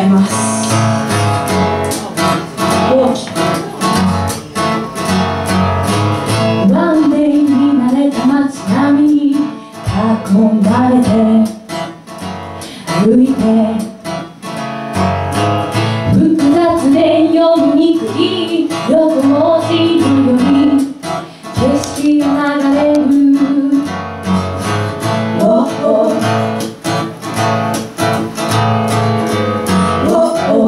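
A live song: a woman singing in phrases over a strummed acoustic guitar.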